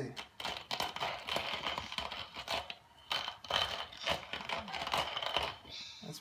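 Hand-crank stainless-steel coffee grinder being turned, its burrs crunching whole coffee beans in an uneven, gritty run of crackles with a brief lull partway through.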